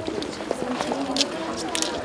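Young women's voices singing without accompaniment while they dance, with footsteps and short sharp taps on a hard floor.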